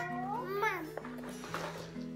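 A toddler calling "Mama" in a high, drawn-out, whiny voice that rises in pitch, over light background music.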